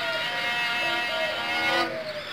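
A solo violin playing long, sustained bowed notes that stop shortly before the end.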